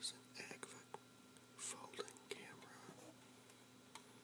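Soft whispered speech, with a few small sharp clicks in the first second.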